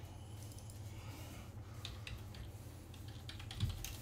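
Faint, scattered light clicks and taps, with a slightly louder soft thump near the end.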